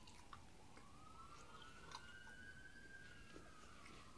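Faint chewing and mouth sounds of a person eating barbecue chicken by hand, with small scattered clicks. Behind it, a faint distant siren-like tone climbs slowly and then falls away over several seconds.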